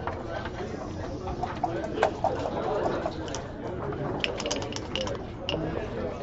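Backgammon dice shaken in a cup and thrown onto the board: a quick run of sharp clicks and rattles about four to five seconds in, over a steady murmur of people talking in the room.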